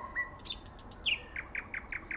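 Small songbirds chirping: a few short notes, then from about a second in a quick run of short, downward-sliding chirps.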